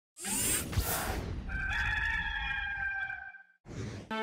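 A rooster crowing: a rough, noisy start followed by one long held note lasting about two seconds. A brief rush of noise follows near the end.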